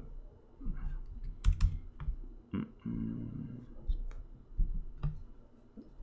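A few separate keystrokes on a computer keyboard and mouse clicks, sparse and irregular.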